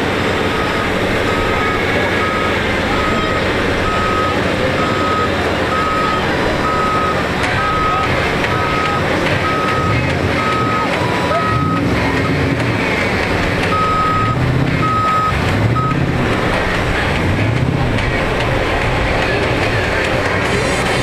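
Skid-steer loader's reversing alarm beeping a little more than once a second over running engines. The beeping stops about halfway through and returns for a few beeps. Late on, engine revs rise and fall repeatedly.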